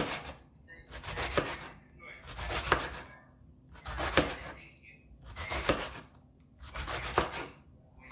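Knife cutting through crisp vegetables on a cutting board, in slow, even strokes. Each stroke is a crunch ending in a sharp knock of the blade on the board, about one every second and a half, six times.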